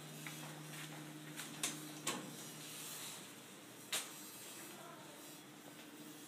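A faint steady low hum with a few quiet knocks and clicks, the clearest about four seconds in; a lower hum tone stops about two seconds in.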